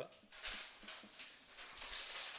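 Marker pen writing on a whiteboard: a run of short, faint, scratchy strokes as a formula is written out.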